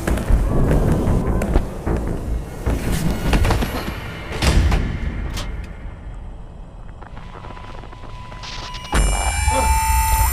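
Dark film score with thuds and hits, fading to a low drone in the second half; about a second before the end a loud electric buzz cuts in suddenly.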